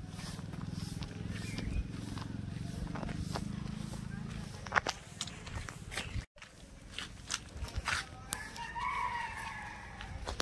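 A rooster crowing once near the end, the call rising and then falling. Before it there is a low steady hum and scattered sharp clicks.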